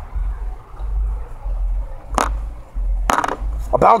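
Dice rattling in cupped hands, with two short sharp clicks about two and three seconds in, over a steady low rumble.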